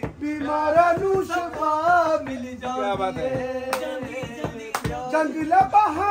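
A man singing unaccompanied in long, held, wavering notes, with two sharp clicks near the middle.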